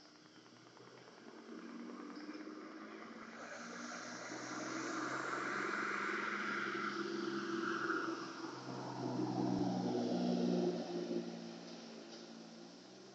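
A vehicle passing on the street: engine and tyre noise swells over several seconds, is loudest in the second half, and fades away near the end.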